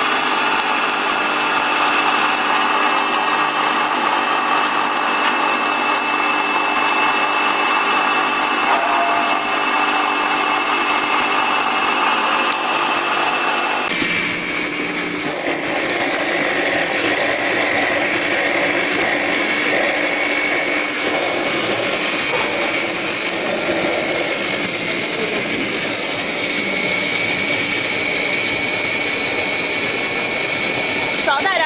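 Electric grinding machine running steadily, a continuous whine made of several steady tones. About halfway through the sound changes suddenly to an electric colloid mill running under load while grinding a paste.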